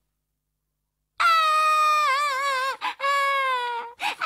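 Cartoon children crying in a long, high wail that starts about a second in. The pitch wavers in the middle, and there is a brief break before the wail carries on.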